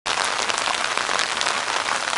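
Steady, consistent rain falling: an even hiss with faint patter of drops.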